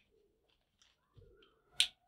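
Near silence, broken by one short, sharp click near the end.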